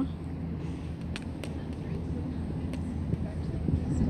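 Outdoor harbourside ambience: a steady low hum with a few faint clicks.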